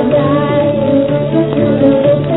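A 1941 Hindi film song: a woman singing a wavering melodic line over held instrumental accompaniment.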